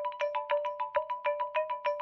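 Background music: a quick, even run of short chiming notes, about seven a second, over a steady held tone.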